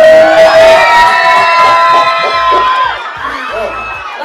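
Live hip-hop music played loud through a club sound system, with a long held note over the track that ends about three seconds in, after which a low beat comes through.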